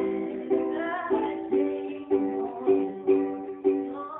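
Soprano Makala ukulele strummed in chords, about two strums a second at an even pace, in a small room.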